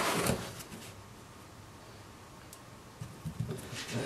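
A short scrape of a clear acrylic ruler and marking pencil against a Kydex sheet on a cutting mat, then quiet, then a few light taps and rustles as the ruler and pencil are handled near the end.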